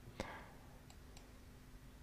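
Near silence: faint room tone with a low steady hum, a soft click just after the start and two faint ticks about a second in.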